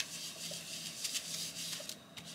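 A foam sponge rubbing chalk pastel onto a paper card: a soft, scratchy swishing in irregular strokes.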